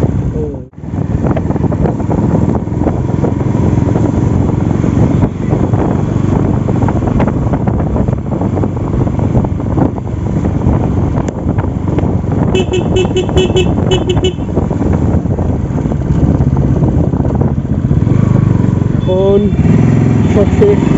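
Bajaj Pulsar NS200's single-cylinder engine running steadily as the bike is ridden, with heavy rumbling road and wind noise. About twelve seconds in, a horn gives a quick run of about six short beeps.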